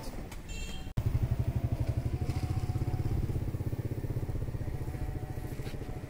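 A small engine running close by with a fast, even putter that starts suddenly about a second in and eases off slightly toward the end.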